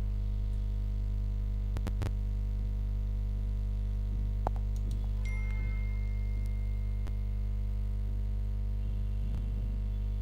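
Steady low electrical mains hum with a stack of overtones, picked up on the recording. A few faint clicks break it up.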